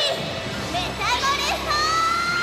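A high-pitched girl's voice with no clear words, in short gliding cries and a longer held note near the end. A shimmering soundtrack runs under it.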